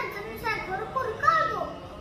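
A young boy's voice reciting.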